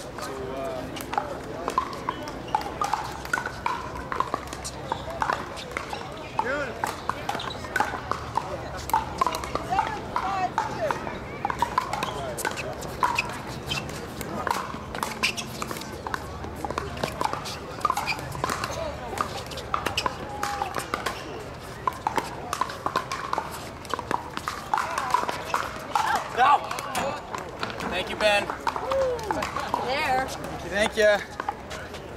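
Pickleball paddles striking a plastic pickleball during rallies: repeated sharp clicks at irregular intervals, with voices chattering in the background.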